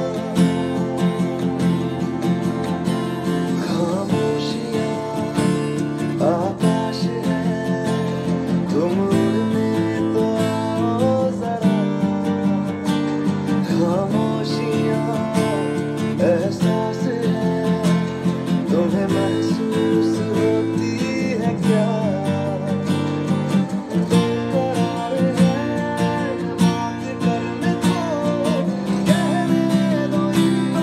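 Steel-string acoustic guitar, capoed at the fifth fret, strummed in a steady down, down-up-down-up pattern, changing between F, C and G chord shapes every few seconds. A melody line glides above the chords.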